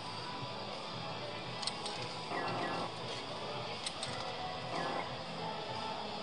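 Amusement arcade background: music and jingles from the machines over a steady din, with a few small clicks.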